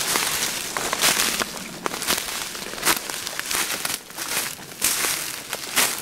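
Footsteps crunching through dry leaf litter, with brush and twigs scraping past the walker. The result is an irregular run of crackling, crinkling rustles.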